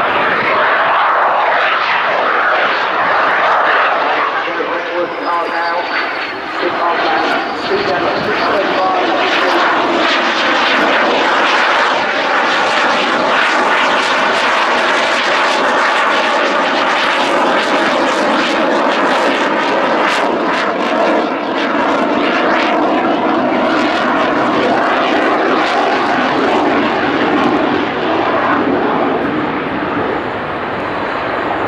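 Saab JAS 39C Gripen fighter's single Volvo RM12 afterburning turbofan roaring loudly and steadily as the jet manoeuvres overhead, with a thin whine falling in pitch about five seconds in.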